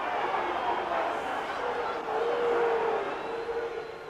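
Football crowd in a stadium: a steady hubbub of many voices, with one held, chant-like note standing out from about halfway through.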